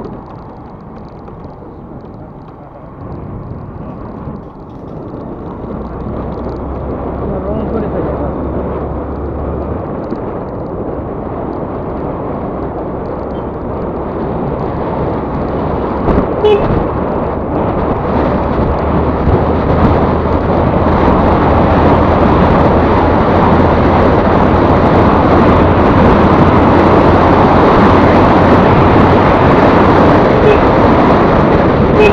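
Wind rushing over the microphone of a camera riding on a moving scooter, over the scooter's engine and road noise, growing steadily louder; a low steady engine hum runs beneath.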